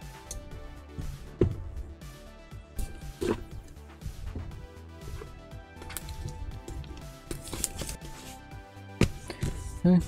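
Background music with a steady bed of tones, over which plastic shrink-wrap on a cardboard box crinkles and rustles in a few short bursts as it is handled and pulled off.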